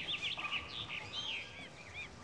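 Small birds chirping: many short, quick calls that rise and fall in pitch, over faint outdoor background noise.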